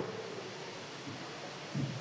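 A pause in speech filled by a low, steady hiss of room tone picked up by the speaker's microphone.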